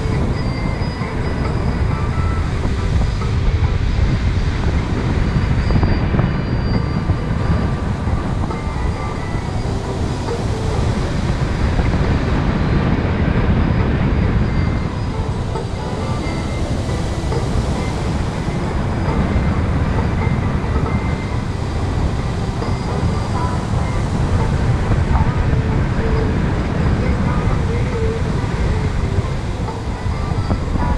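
Wind rushing over the microphone of a camera carried by a paraglider in flight: a loud, steady rumble that swells and eases a little from moment to moment.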